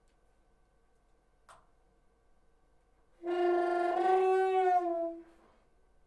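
Saxophone playing one long held note that starts about three seconds in, bends slightly up and then down, and fades out after about two seconds. A faint click comes before it.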